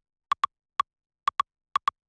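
A single dry, clicky percussion sample from a programmed tech house groove, playing a syncopated pattern of about seven short hits, several in quick pairs, with silence between them.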